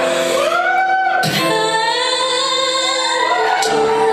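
Female voice singing a slow song live over piano: long sung notes that swell and bend in pitch above sustained piano notes.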